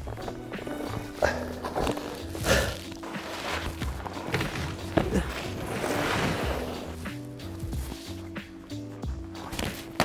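Background music with a steady bass line, and the hiss of skis sliding over packed snow swelling in the middle.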